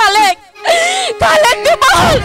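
A performer's voice wailing in lament, in long drawn-out wavering cries, with a brief break about half a second in.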